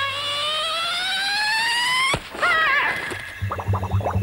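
Cartoon-style sound effects: a whistle-like tone slides steadily upward for about two seconds and cuts off with a click. A wavering warble follows, then a quick flurry of short pitch glides over a low hum near the end.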